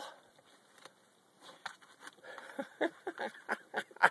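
A dog pawing and nosing into deep snow: short, irregular scuffing sounds that start about a second and a half in and come faster toward the end.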